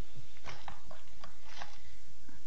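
A handful of light clicks and knocks of things being handled close to a computer microphone, over a steady low electrical hum.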